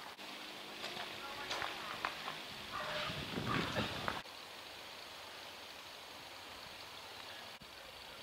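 Faint outdoor ambience with distant, indistinct voices and a few soft ticks in the first half. After an abrupt change about halfway through, it becomes a steady faint hiss.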